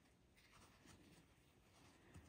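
Near silence, with only the faint rustle of yarn and a metal crochet hook being worked through stitches.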